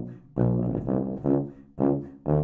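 Eastman EPH495 BBb sousaphone playing a short bass line of separate low notes, with a short gap before a new note near the end.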